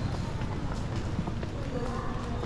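Footsteps of several people walking on a hard, polished floor, short irregular steps over a busy background of indistinct voices.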